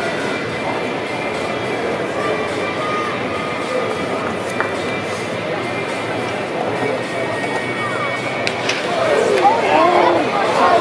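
Indistinct background chatter of several voices with faint music underneath. The voices get louder and clearer near the end.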